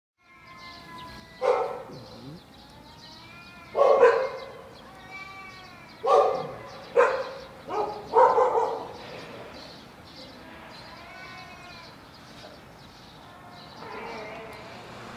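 Two cats yowling in long, wavering cries, broken by about six loud, sudden outbursts in the first half, then quieter drawn-out cries. It could be a fight or mating; the two sound the same.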